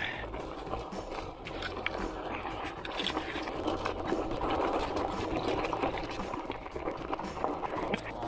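Bicycle tyres rolling over a gravel trail: a steady crunching hiss with many small clicks and rattles.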